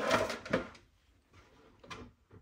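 Hands handling a phone and its charging cable on a desk: a short rubbing rustle with small knocks in the first half-second or so, then near quiet, and a small click near the end.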